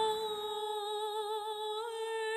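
A woman's voice humming one long held note in a soundtrack melody, wavering slightly, with a small rise in pitch near the end.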